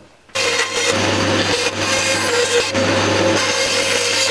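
An electric power tool working wood, starting abruptly about a third of a second in and running loud and steady with a low hum under its hiss.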